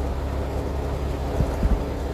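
Steady low rumble of a moving truck's engine and road noise heard inside the cab, with a couple of short low bumps near the middle.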